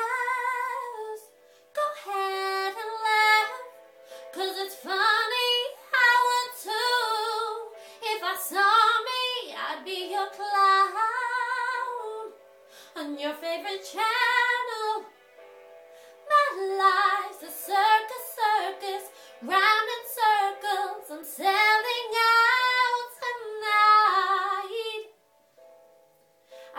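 A woman singing a slow ballad solo, phrase by phrase with short breaths between lines, her voice gliding up and down in pitch; the singing drops to a softer passage about halfway through.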